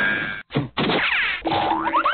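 Cartoon-style comedy sound effects: a short noisy hit at the start, then sweeping falling glides and quick springy boings rising in pitch near the end.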